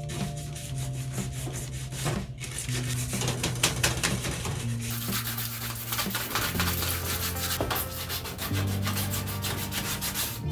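Hand sanding of a gloss-painted steel cabinet shelf with a sanding block, in quick back-and-forth strokes that scuff off the shine so new paint will take. Background music plays underneath.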